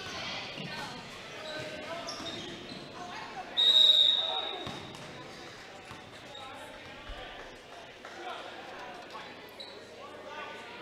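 A referee's whistle blown once, a single sharp, high blast about three and a half seconds in, the loudest sound, stopping play in a basketball game. Around it a basketball bounces on the gym floor among crowd voices.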